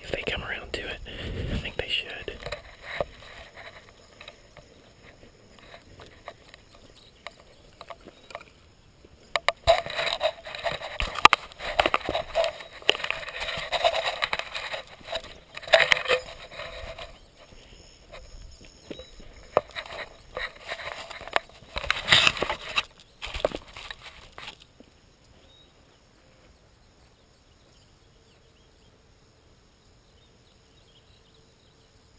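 Close rustling, scraping and knocking of a camera being handled and set up, in uneven clusters, loudest from about ten to twenty-four seconds in. About twenty-five seconds in it cuts to a quiet outdoor background.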